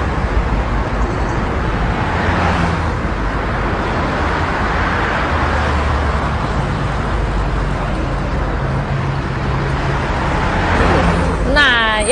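Steady road traffic noise with a low engine hum, as vehicles pass by in several slow swells.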